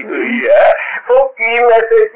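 A man speaking, his voice drawn out into long, wavering held syllables in the second half.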